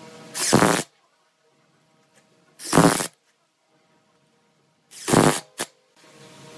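Cordless driver running in three short bursts about two seconds apart, driving wood screws through a metal lathe faceplate into a wooden blank; the last burst ends with a brief blip.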